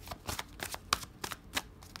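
A deck of tarot cards being shuffled by hand: about a dozen quick, irregular clicks and slaps of card edges against each other.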